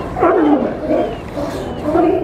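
California sea lions barking. A run of overlapping calls fills the first second, and another call starts near the end.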